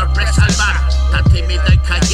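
Hip-hop song: a Spanish rap vocal over a beat with a sustained deep bass and repeated kick-drum hits.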